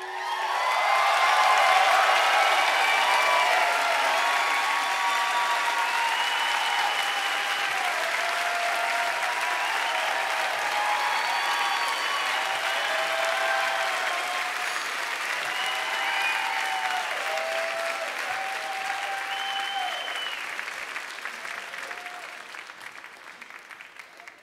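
Concert audience applauding and cheering, with whoops and whistles over the clapping, at the end of a song; it swells in the first couple of seconds and slowly dies away toward the end.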